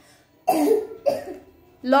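A young child's acted coughs: two short coughs, the first louder, about half a second apart, made on cue to show the word "cough".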